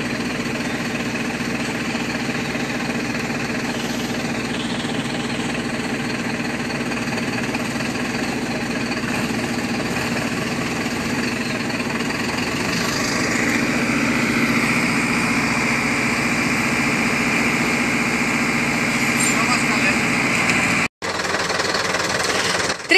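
Heavy diesel engine running steadily as the milk tanker truck labours in deep mud. A little past halfway it grows louder and a high whine joins in. The sound drops out for a moment near the end.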